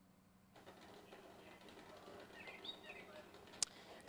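Almost silent outdoor background noise. A few faint chirps come a little past halfway, and a single sharp click comes near the end.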